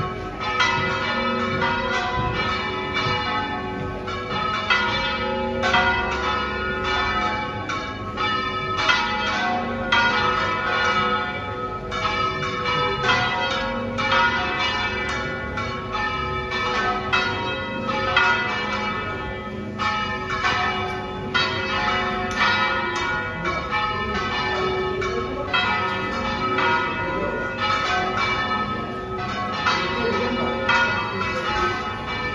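Several church bells in a brick tower ringing together in a continuous peal of many overlapping strokes, the bells swung full circle in a Valencian-style general ringing (volteo general).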